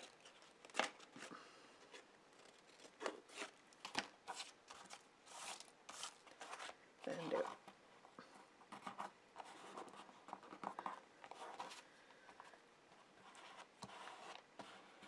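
Scissors snipping the corners off paper, several separate sharp snips over the first few seconds, then quieter rustling as the paper is folded over a board and pressed down.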